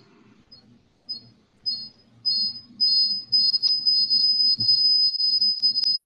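High-pitched audio feedback squeal from a conference-call audio loop. It starts as short chirps and builds into a steady, piercing tone from about halfway, then cuts off suddenly at the end. It is the sign of an open microphone picking up the meeting's own speaker output, here blamed on Jim's call device.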